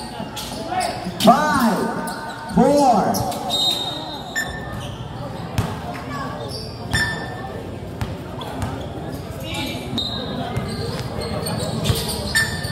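Basketball bouncing on a hard court during live play, with irregular sharp thuds of dribbling and passes.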